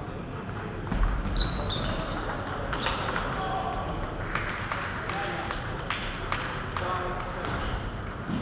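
Table tennis ball being hit back and forth in a rally: sharp, irregular clicks of the celluloid ball on the paddles and table, one with a short ringing ping about a second and a half in. Voices chattering in the hall run underneath.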